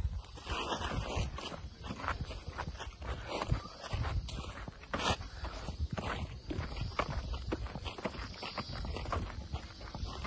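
Footsteps on a paved path, irregular crunching and scuffing, over a steady low rumble of wind and handling on the microphone.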